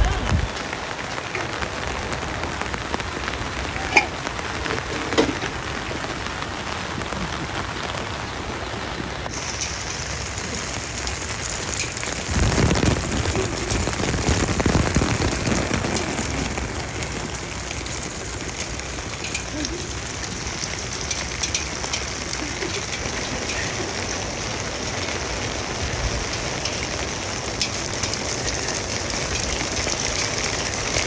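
Steady rain, an even hiss that brightens about nine seconds in and swells louder for a few seconds around the middle, with a couple of brief knocks.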